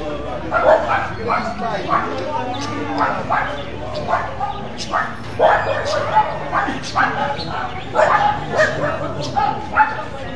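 A dog barking in short, repeated barks, about two a second, with people talking.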